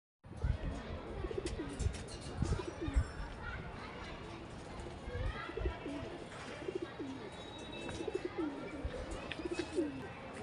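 Domestic pigeons cooing over and over, with higher chirps from small birds. A few dull thumps come in the first three seconds.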